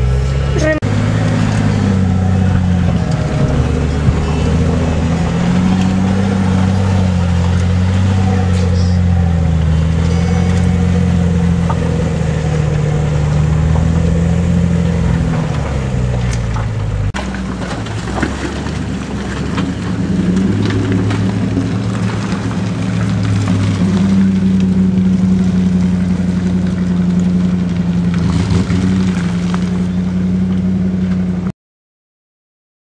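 Off-road 4x4 engine running under load through mud, its pitch rising and falling with the throttle, heard from inside the cab. About seventeen seconds in the sound changes abruptly to a steadier, held engine note.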